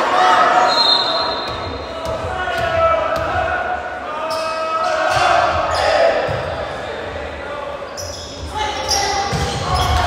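Volleyball serve and rally on a gym court. A short high whistle blows about a second in. From about four seconds on come several sharp ball hits and thuds, while players call out and spectators chatter.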